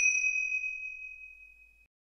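A single bright, bell-like ding that rings on and fades away over nearly two seconds.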